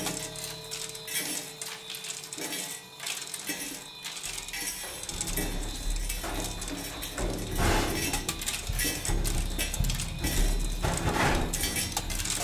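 Prepared drum kit played with extended techniques: small metal objects rattling and clinking against the drumheads and cymbals in a dense, irregular texture. A low drum rumble comes in about four seconds in and carries on under the clatter.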